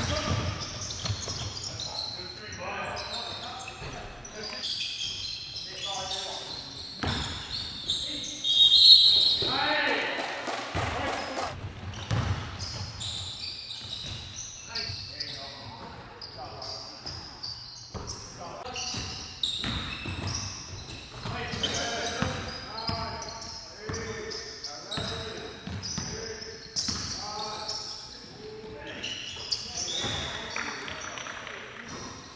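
Basketball bouncing on a hardwood gym floor during a game, with players' voices echoing in a large hall. A loud, high-pitched squeal about nine seconds in.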